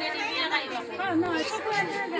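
Several people talking at once: the overlapping chatter of a small crowd, no one voice standing out.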